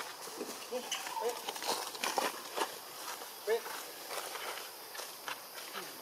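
Macaques giving short, soft squeaky calls several times, some rising and some falling, with light clicks and leaf rustles in between.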